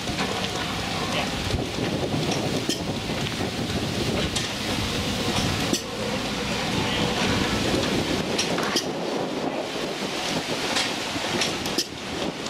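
Strong wind buffeting the microphone: a steady rushing noise with scattered small knocks.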